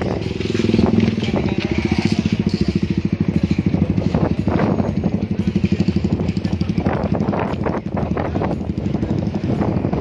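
Motorcycle engine running at low revs close by, a steady rapid pulsing from its exhaust.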